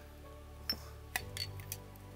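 Soft background music with a few light metallic clinks as small metal parts are handled and set down on a workbench; a sharper clink comes just past a second in, with smaller taps after it.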